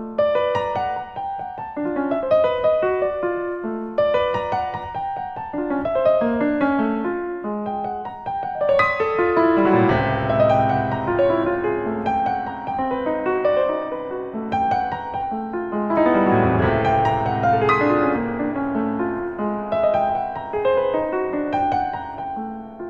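Solo piano playing a slow, searching line of single notes, which thickens into dense, louder chords with deep bass about nine seconds in and again about sixteen seconds in.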